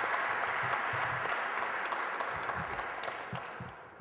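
Audience applause, starting abruptly and slowly dying away.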